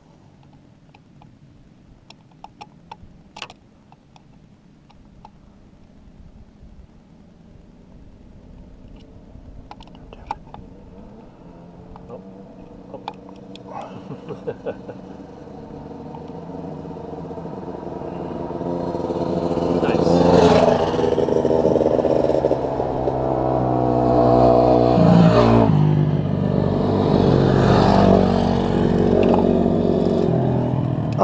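A motor vehicle engine that grows steadily louder over several seconds as it comes closer, then runs loud for the last ten seconds with a few surges in revs. A few faint clicks of hand tools come in the first seconds.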